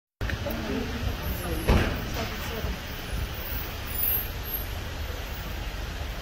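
A car rolling slowly up and drawing to a stop, its engine and tyres a steady low rumble, with one sharp knock a little under two seconds in.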